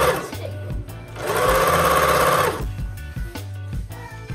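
Domestic electric sewing machine stitching in two short runs: one stops just after the start, and a second runs for about a second and a half, its motor whine rising as it speeds up and falling as it stops.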